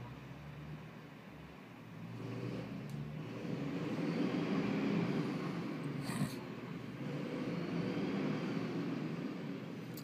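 Coach bus engine running and revving, growing louder about two seconds in and swelling and easing, as the stuck bus tries to climb with a drive wheel spinning clear of the ground. A brief hiss about six seconds in.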